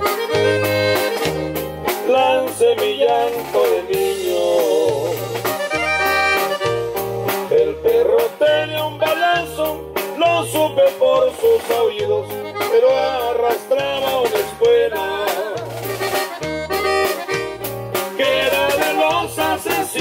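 Norteño band playing a corrido: a button accordion carries the melody over bajo sexto strumming and a bass line that alternates between two notes in a steady two-beat rhythm.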